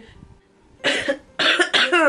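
A woman coughing twice into her fist, starting about a second in.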